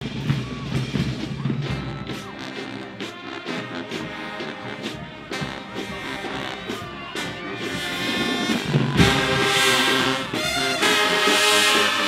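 A marching band playing, its brass section of trombones and sousaphones over sharp, regular beats. The band gets louder and fuller about nine seconds in.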